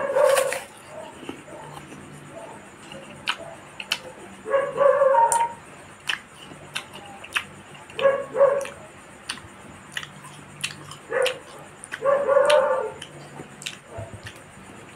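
Close-up eating sounds of fruit being chewed: sharp mouth clicks and smacks. About five times they are broken by short pitched calls, which are the loudest sounds.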